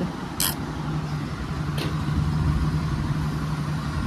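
A steady, low mechanical hum with one held tone, with two brief hissy ticks about half a second and nearly two seconds in.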